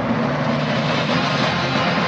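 Broadcast news transition sting: a loud, steady wash of whooshing noise with held low notes of theme music under it.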